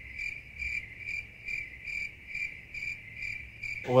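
Crickets chirping as an edited-in comedy sound effect: a steady high chirp pulsing about twice a second, starting and stopping abruptly, the 'crickets' gag for an awkward silence.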